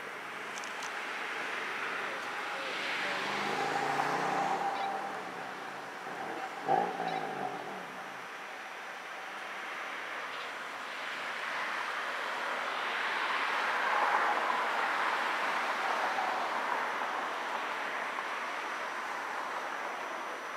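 Road traffic passing: two vehicles swell up and fade away, one about four seconds in and one about fourteen seconds in. A short, sharp pitched sound comes about seven seconds in.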